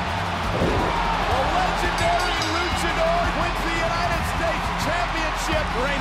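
Hype-video music bed with a steady low beat under a cheering, shouting arena crowd, with a thud about half a second in.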